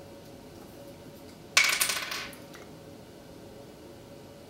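A single short clatter of a small hard object, which rings briefly and dies away, about one and a half seconds in. A faint steady hum sits under it.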